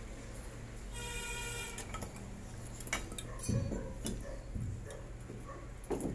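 Scattered knocks and clinks of wooden offcuts and hand tools being handled on a concrete floor. A short ringing tone sounds about a second in.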